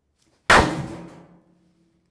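A single loud clanging hit about half a second in. It rings on with two low steady tones that fade over about a second and a half.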